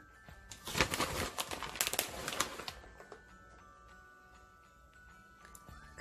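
Rustling and crinkling as shredded cheese is handled from its plastic bag and scattered by hand over a lasagna, for about two seconds. After that only faint background music with held notes remains.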